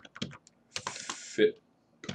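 Computer keyboard being typed on: a quick run of key clicks as a web address is entered.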